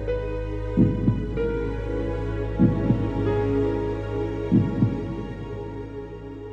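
Slow heartbeat sound effect, a double thump about every two seconds, three in all, over sad, sustained background music.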